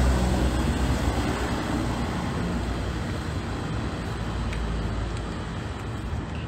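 A motor vehicle's engine running close by, a low rumble that slowly fades away.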